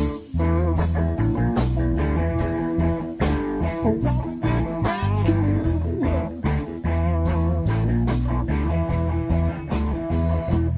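Live blues-rock trio playing an instrumental passage with no singing: electric guitar leads over bass guitar and drums in a steady beat.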